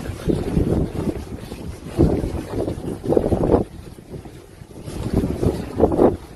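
Wind buffeting a phone's microphone in a steady low rumble, with a few louder indistinct moments, from street footage shot by hand.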